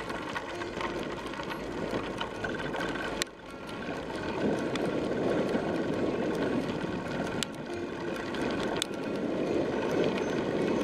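Steady rumble and crunch of wheels rolling along a gravel track, with scattered small clicks of stones; it dips briefly about three seconds in.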